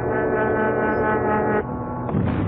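Cartoon soundtrack drone: a steady, sustained chord of many tones that breaks off suddenly about a second and a half in, giving way to a lower, rougher rumble.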